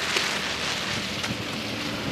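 Steady, even hiss of outdoor background noise, weather-like, with a few light knocks in it.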